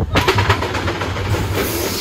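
Steel roller coaster train rolling into the station: its wheels rumble and clatter over the track with a run of sharp clicks, and a hiss sets in near the end.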